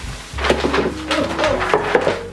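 Sheets of kraft paper rustling and crinkling as they are handled on the floor, with a series of short scrapes starting about half a second in, over background music.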